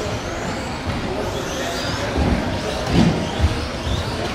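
Electric 1/10 RC buggies' motors whining as they accelerate around the track, the whine rising in pitch, with a few dull thumps late on.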